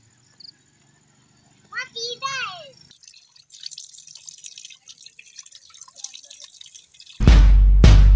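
Water running from an outdoor tap and splattering on the ground as someone washes their face. A little before the end, loud electronic music with a heavy beat cuts in. A brief voice is heard about two seconds in.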